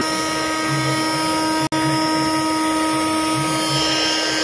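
Makita DTM52 cordless oscillating multi-tool running with no load at speed setting 6: a steady, high, even whine with its blade buzzing free. The sound breaks off for a split second near the middle.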